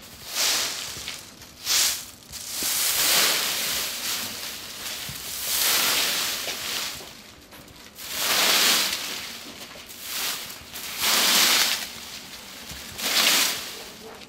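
A large twig broom sweeping dry corn stalks and leaves across a dirt yard: long scratchy swishes, about one every two seconds.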